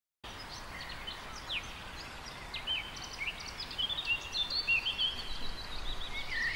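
Several birds chirping and whistling with short, quick calls over a steady outdoor background hiss, cutting in suddenly out of silence a quarter of a second in.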